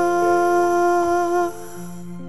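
A Korean ballad's closing vocal: a male voice holds one long hummed or sung note over soft accompaniment. The note ends about a second and a half in, leaving quieter instrumental backing.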